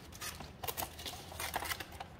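Paper-faced foam board being handled on a wooden bench, with a scatter of light clicks and rustles as the cut-out glider wing is lifted free of its kit sheet.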